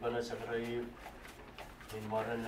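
A man's voice speaking slowly in long, drawn-out syllables, the close of a spoken prayer.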